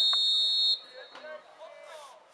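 Referee's whistle: one short, steady blast of about three-quarters of a second, signalling that the free kick may be taken.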